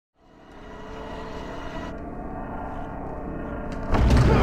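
A low, steady rumbling drone with several held tones, fading in from silence over the first second: film soundtrack sound design.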